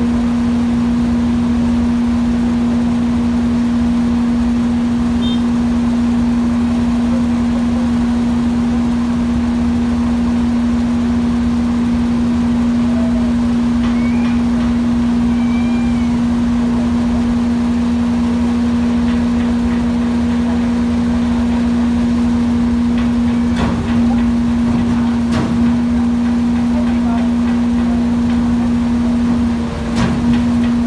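Barge's machinery running with a steady, unchanging hum over a low rumble, with two short knocks late on.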